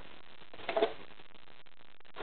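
Handling noise of a string-and-cardboard model: a brief double rustle of strings against the cardboard box about two-thirds of a second in, as the strings are pulled tight, over a faint steady hiss.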